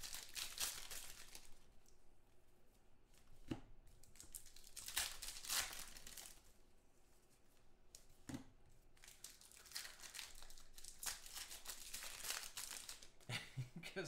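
Foil wrappers of 2014 Contenders football card packs being torn open and crinkled by hand, in several separate bursts with short pauses between.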